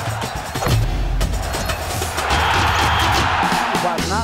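Loud TV bumper music with a heavy bass line and drum hits. About two seconds in, a rushing wash of noise swells over it and runs until the music ends.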